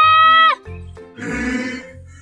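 A cartoon character's high, held vocal call that cuts off about half a second in, then a short rasping vocal sound, over background music with a steady bass pulse.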